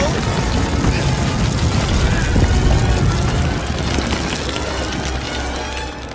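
Film soundtrack: loud dramatic orchestral score over a dense, rumbling wash of action sound effects, fading near the end.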